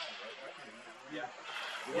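Quiet outdoor background with a man's brief murmured "yeah" about a second in.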